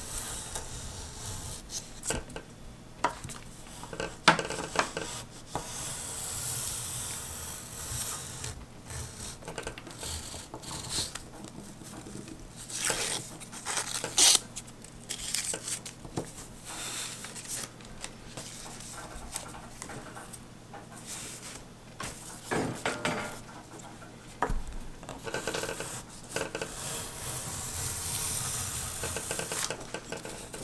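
Razor plane shaving a balsa glider wing to taper and bevel it: repeated strokes of soft, hissing scraping as the blade peels off curled shavings, broken by scattered sharp clicks and knocks.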